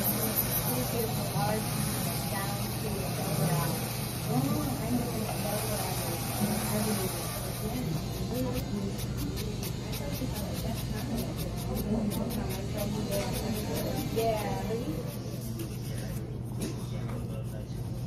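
Indistinct background conversation over a steady low hum. From about eight seconds in, a fast run of faint scratchy strokes from a nail file being worked across a fingernail.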